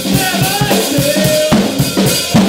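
A live blues-rock band playing: a drum kit keeps a quick, steady beat of about four hits a second under a Gibson ES-137 electric guitar and a singer's voice.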